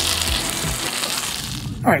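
Beef burger patty sizzling in hot fat in an aluminum frying pan over a propane camp stove: a steady hiss that cuts off just before the end.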